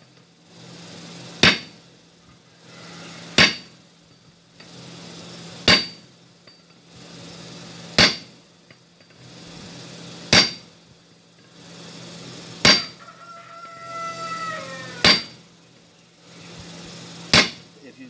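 Hammer blows on a glowing steel bar laid across a hot cut hardie in the anvil: eight evenly spaced strikes, about one every two and a half seconds, each with a short metallic ring, as the hot bar is cut through. A rooster crows once in the background about two-thirds of the way through.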